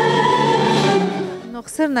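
A woman singing an Arabic tarab song with orchestral accompaniment, fading out about a second and a half in as a woman's speaking voice takes over.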